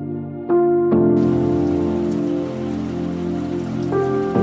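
Steady rain falling, starting about a second in, heard over soft ambient music.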